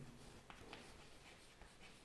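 Faint scratching and ticking of chalk on a chalkboard as a word is written, in a few short strokes.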